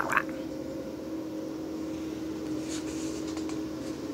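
Steady low machine hum in the room, two constant tones over a faint hiss, with a faint rustle of a picture-book page being turned about three seconds in.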